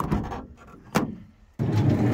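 Two sharp clicks of a van door being handled, then about one and a half seconds in a steady motor drone cuts in suddenly.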